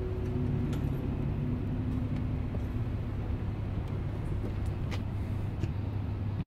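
The last chord of an acoustic guitar rings out and fades over the first second or two, over a steady low rumble of street traffic. A few light clicks stand out, one near the end.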